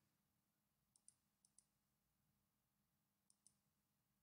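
Near silence, broken by three faint pairs of short clicks: a computer mouse clicking.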